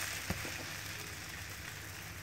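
Maida dosa sizzling on a hot griddle just after being flipped, a steady hiss that eases slightly, with one small click of the wooden spatula about a third of a second in.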